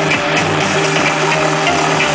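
Electronic dance music played loud through a truck-mounted wall of woofers and horn tweeters (a Brazilian 'paredão' sound-system truck), steady with a pounding beat.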